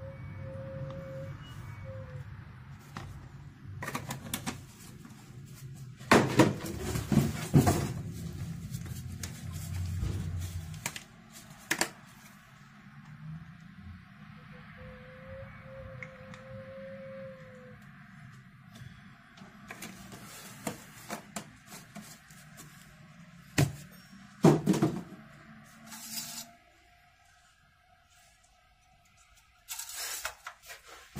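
Quart bottles of transmission fluid being handled and poured into an engine's oil filler: several knocks and thunks, the loudest about six to eight seconds in and again near twenty-four seconds, over a low hum that stops about eleven seconds in.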